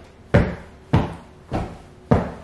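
Hand striking a sofa's padded cushions: dull thumps a little over half a second apart, three in a row with the third a little weaker, beating the cushions so their filling shifts.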